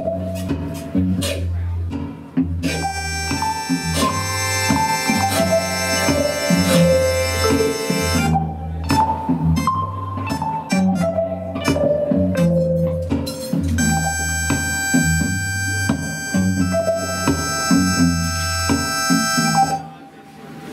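Improvised experimental music on electric guitar and tabletop electronics: a steady low drone under a stepwise falling melodic line played twice, with clusters of steady high tones coming in for several seconds at a time.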